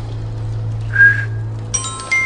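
A person whistles a single short, steady note about a second in, over a steady low music drone. Near the end a chiming music sting comes in.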